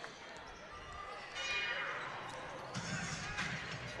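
A basketball being dribbled on a hardwood court, faint, amid low voices from the arena.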